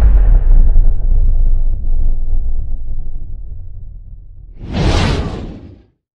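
Sound effects for an animated logo reveal: the deep rumbling tail of a boom that fades over several seconds, then a whoosh that swells about four and a half seconds in and cuts off suddenly.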